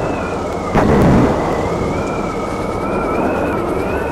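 Logo sound effect: a deep boom about a second in, over a steady rumbling, hissing noise like thunder and rain, with two high, slowly wavering whistle-like tones running through it.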